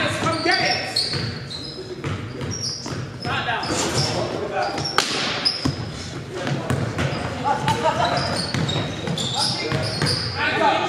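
Basketballs bouncing on a hardwood gym floor, with short high sneaker squeaks and players' indistinct shouts, all echoing in a large gym.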